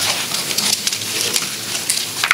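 Sheets of paper rustling and pages being turned close to a table microphone: a steady crackling hiss broken by many small sharp crinkles.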